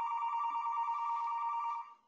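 A landline telephone ringing: one continuous ring of two steady pitches close together, which stops shortly before the end.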